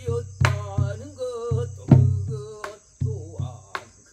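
Korean folk singing by a man's voice with wavering, ornamented pitch, accompanied by a buk barrel drum: deep strokes on the drumhead and sharp clacks of the stick on the drum's wooden body, several to the second. A steady high chirring of insects runs underneath.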